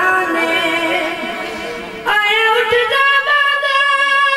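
A boy's unaccompanied voice reciting a noha (Shia lament) into a microphone. A wavering held note fades away, then about two seconds in he comes in loudly on a new long, high sustained note.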